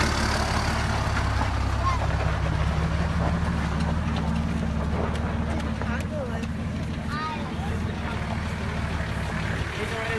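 Engine of a lifted 4x4 truck running steadily at low revs, easing slightly in the second half, as it crawls on a flex ramp. Onlookers' voices are in the background.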